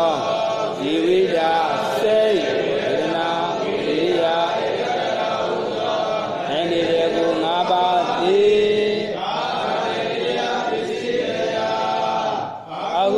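A man's voice chanting a lesson text in a continuous, melodic recitation, the pitch rising and falling phrase by phrase.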